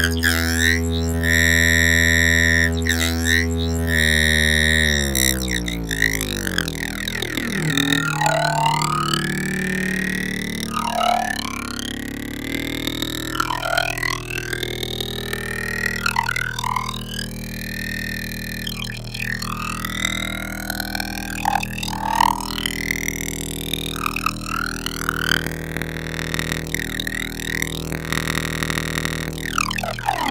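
Make Noise STO oscillator tone run through a Modcan Dual Phaser, its two 24-stage phasers chained for 48-stage phase shifting and swept by Maths envelopes. A steady buzzy tone drops in pitch about five seconds in. After that, deep swooshing phaser sweeps come round every two to three seconds.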